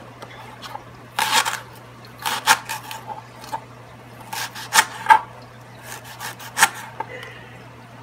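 Kitchen knife slicing a leek into rounds on a plastic cutting board: a dozen or so sharp, irregular taps of the blade striking the board.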